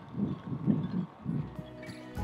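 Low, uneven muffled thumps of wind buffeting the microphone, then background music fading in near the end.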